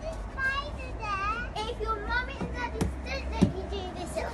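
Children's high-pitched playful vocalising, squeals and sing-song sounds rather than clear words, with two sharp knocks near the end, the second the loudest sound.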